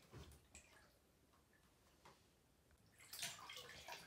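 Near silence broken by faint small splashes and drips of bathwater as a toddler moves in the tub, a little more of it near the end.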